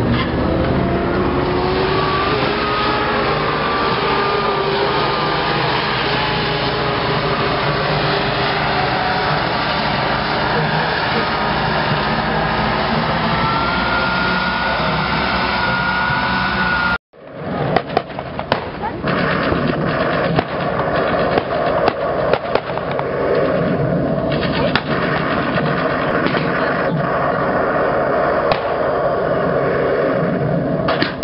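Hetzer tank destroyer (Swiss postwar G13) driving, its engine running with a note that slides up and down, together with the noise of its tracks. It stops abruptly about 17 seconds in and gives way to a steadier, more distant engine sound broken by many short sharp cracks.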